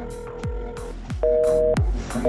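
Electronic dance music with a steady kick-drum beat. Over it, in the second half, a Samsung Galaxy S4 Active gives two loud two-note beeps, each about half a second long with half a second between them, a busy-style tone marking the end of the outgoing call.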